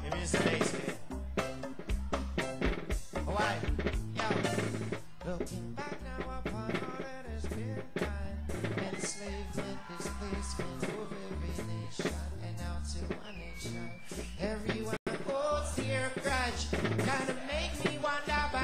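Informal jam: hand drums played to a steady beat, with pitched melodic parts over them.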